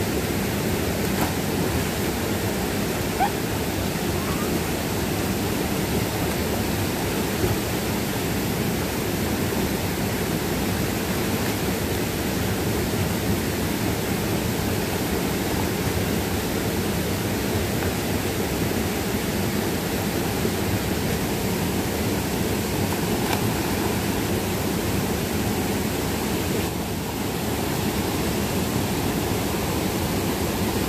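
Steady rush of a small waterfall cascading over rocks into a pool, a continuous even roar of falling water.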